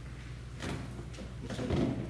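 A few soft knocks and rustles of people shifting on a wooden floor and handling music folders, the loudest a dull thump just before the end, over a steady low hum.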